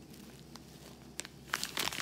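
Small zip-lock plastic bag of dried flowers crinkling as it is handled: a few faint ticks at first, then a short burst of crackly crinkling near the end.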